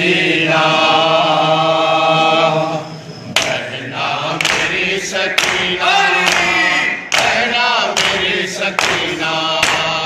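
A group of men chanting a noha (mourning lament) in unison, holding one long note. From about three seconds in, sharp slaps of hands beating on chests (matam) keep a steady beat under the chanting.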